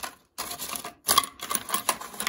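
Coins clicking and rattling against a clear plastic container held in the hand. A quick run of small clicks starts about half a second in and grows louder about a second in.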